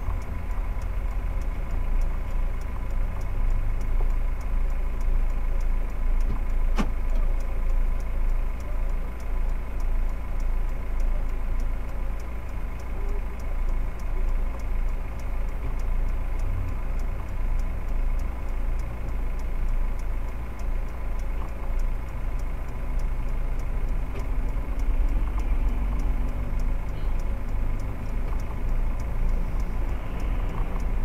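Low, steady rumble of a car idling while stopped in traffic, picked up by a dashcam mic inside the cabin. There is a single faint click about seven seconds in.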